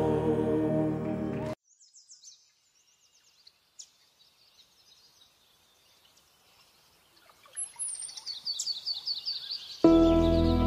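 Music cuts off about a second and a half in. Then comes a near-quiet gap with faint high bird chirps, and from about seven and a half seconds a bird sings louder: a quick run of short, repeated falling chirps, about four a second. New music starts at the very end.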